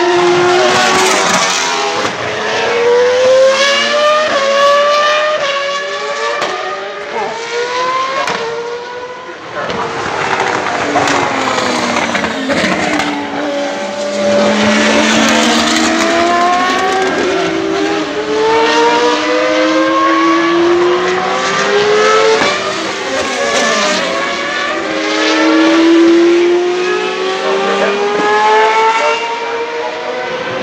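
Single-seater racing cars lapping, their engines climbing in pitch gear after gear and dropping back at each upshift. Several cars are heard at once as they pass and fade.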